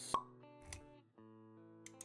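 Background music of held notes, with a short pop sound effect just after the start and a softer low thump a little before halfway.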